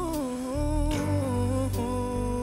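Soundtrack music: a solo voice sings long held notes without words, over a soft, slow accompaniment with a steady bass.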